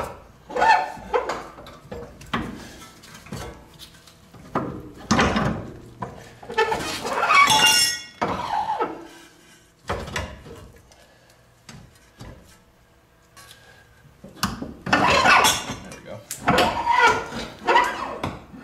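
Metal knocks and clinks of a new front-wheel-drive CV axle being handled and slid into the steering knuckle and wheel hub, irregular throughout, with a ringing metallic clatter near the middle and a quieter spell after it.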